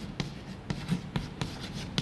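Chalk on a blackboard writing capital letters: an irregular run of short taps and scrapes, about four or five a second.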